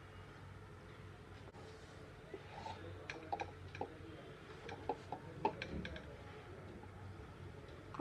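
A silicone spatula stirs cooked moong dal and rice khichdi in a pan, giving a faint scattering of soft clicks and taps from about two to six seconds in. A low steady hum runs underneath.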